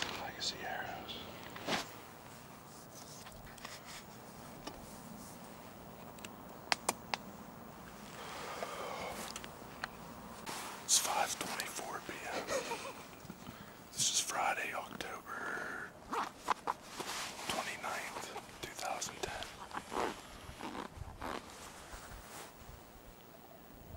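A man whispering close to the microphone in short phrases with pauses, with a few sharp clicks in between.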